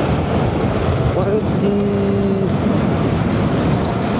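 Wind and road noise rushing over the microphone as an electric scooter runs at speed, climbing toward about 31 mph. A short steady tone sounds a little before halfway through.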